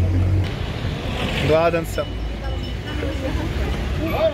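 Street noise with a bus engine idling close by: a low rumble that drops away about half a second in. A voice speaks briefly in the middle.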